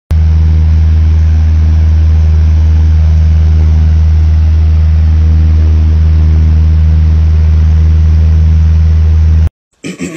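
A loud, unchanging low hum with a buzzy edge, cutting off abruptly about half a second before the end.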